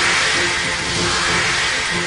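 A TV-drama transition sound effect: a long hissing whoosh swell that fades just after its end, laid over background music with a steady held note.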